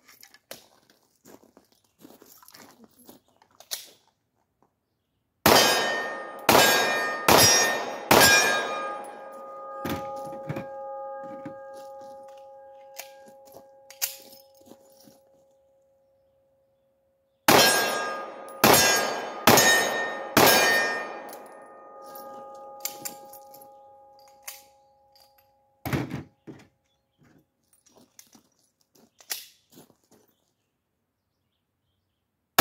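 Pistol shots fired in two quick strings of four, each string followed by a steel target ringing and slowly dying away. One more shot comes near the end, with light clicks of gun handling between the strings.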